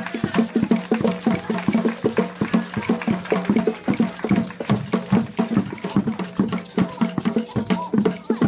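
A children's percussion group playing a fast, steady beat of hand-struck percussion.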